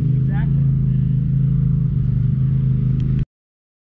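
Side-by-side UTV engine running at a steady low speed, a constant drone, until the sound cuts off abruptly a little over three seconds in.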